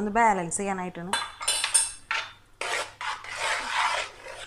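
A metal spoon clinks and scrapes against a wide pan, followed by a hand mixing jackfruit pulp into a thick liquid in the pan, giving a rough rubbing, scraping noise for the last couple of seconds.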